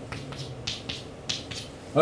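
Chalk being written on a blackboard: a quick run of about six short, sharp chalk strokes, coming roughly in pairs as "minus one" is chalked down a column.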